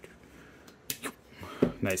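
Box cutter blade slicing through the seal on a cardboard product box, a faint scraping. A sharp click comes about a second in, and a short knock follows about half a second later.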